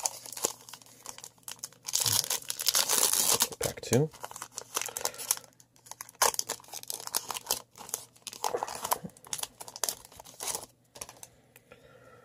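Foil wrapper of a Bowman baseball card pack being torn open and crinkled, loudest about two seconds in, then lighter intermittent crinkling as the wrapper is handled and the cards are pulled out.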